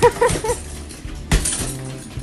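A single hard strike on a hanging heavy punching bag about one and a half seconds in, over background music.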